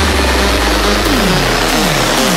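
Trance track in a breakdown: a sustained low bass drone under a hissing synth wash, with no kick drum. Descending synth pitch sweeps begin about a second in.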